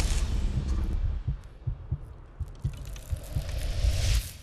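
Break in a trailer soundtrack: the guitar music drops out, leaving scattered low, heartbeat-like thuds that swell up near the end.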